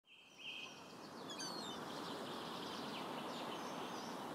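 Quiet outdoor ambience: a steady, even rush of background noise that fades in over the first second, with a few short, high bird chirps over it.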